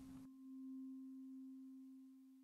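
A faint, steady low ringing tone with a fainter higher overtone, from the soundtrack's music bed; it swells slightly and then slowly fades.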